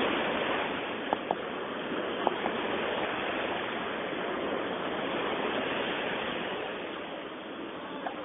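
Sea waves breaking and washing in the shallows: a steady rush that slowly swells and eases. A few short, thin high chirps sound a second or two in.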